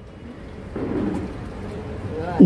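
A short pause in a woman's speech over a public-address system: steady low background noise of the hall, with a faint voice coming in about a second in.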